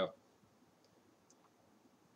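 Two faint computer mouse clicks against near silence.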